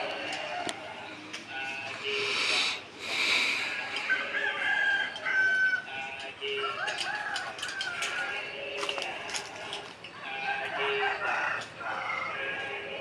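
Chickens calling throughout, with repeated short clucks and a longer held call in the middle, typical of a rooster crowing. About two seconds in come two short rasping noises.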